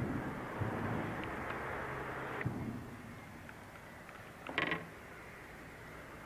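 Handling noise as a bass is lifted by hand from the water into a fishing kayak: a couple of seconds of rustling and splashing ending in a click, then a short creak past the middle.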